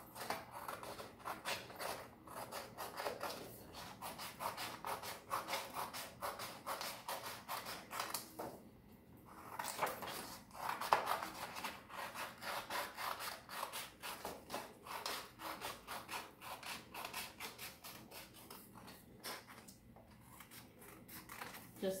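Scissors cutting out a circle of paper: a long run of quick snips and paper rustling, broken by two short pauses, about nine seconds in and near the end.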